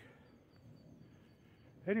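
Quiet woodland background with a faint, steady high-pitched tone through the middle, under a second of quiet. A man's voice starts again at the very end.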